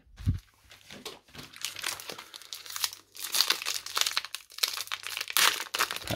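Foil wrapper of a 2021 Score football trading-card pack crinkling and tearing as it is ripped open by hand, after a soft knock at the start. The crackling comes in irregular runs and is loudest in the second half.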